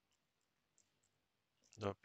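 Faint computer keyboard keys tapped a few times, scattered single clicks, then a man's voice saying "dot" near the end.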